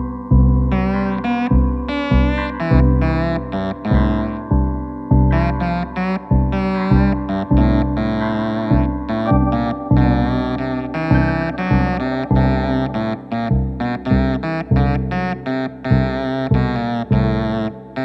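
Instrumental avant-folk passage: electric guitar played through effects in quick runs of wavering, bending notes, over low sustained tones from a Wurlitzer 200A electric piano.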